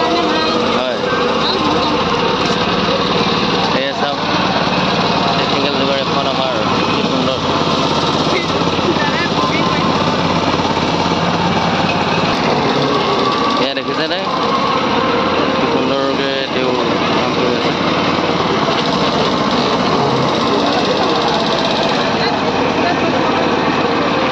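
Small 208cc single-cylinder petrol engine (XR950) running steadily, driving a sugarcane-juice crusher's roller mill, with people talking over it.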